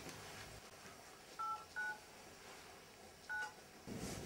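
Mobile phone keypad dialing tones: three short two-note beeps as number keys are pressed. Two come close together about a second and a half in and a third near the end.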